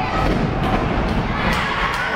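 Dull thuds on a wrestling ring's canvas as a wrestler is taken down to the mat, over crowd voices. A couple of sharp hand claps come near the end.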